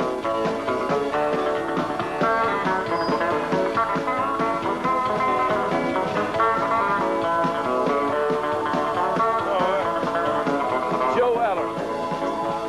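Live country band playing an up-tempo instrumental break, with a lead electric guitar picking quick runs of notes over the rhythm section, after a shouted "woo" at the start.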